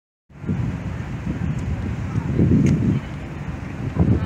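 Wind buffeting a phone microphone: a low, uneven rumble that swells and eases in gusts, after a moment of silence at the start.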